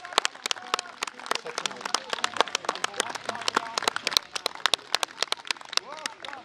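A small audience clapping after a song, the separate claps distinct and uneven, several a second.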